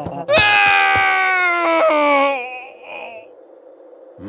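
A person's voice in one long wailing cry, rising sharply at the start and then sliding slowly down in pitch for about two seconds, wavering as it fades out.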